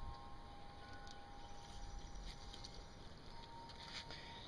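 Faint background: a low rumble and hiss with a thin, steady high tone, and no distinct event.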